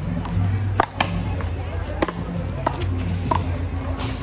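Paddleball rally: a ball struck by paddles and bouncing off a handball wall, heard as about five sharp cracks, the loudest two in quick succession about a second in. Music plays steadily in the background.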